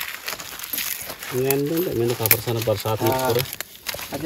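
A person talking over sharp crackles and rustles of dry leaves and twigs as a small kindling fire is being lit and tended.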